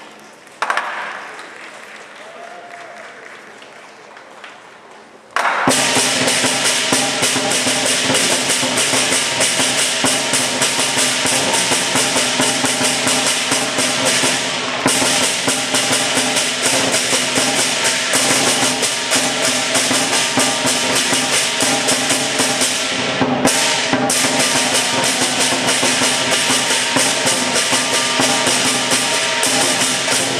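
Lion dance percussion of a big drum and clashing cymbals breaks in loud and suddenly about five seconds in, then plays on in a dense, rapid beat. Before that it is quieter, with a single thump about half a second in.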